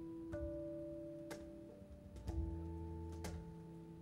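Live band playing an instrumental passage: electric guitar and electric bass holding notes that change every second or two, with a few sharp percussive ticks.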